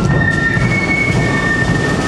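Military marching band playing on the march: drums beating under held high melody notes that step from one pitch to another.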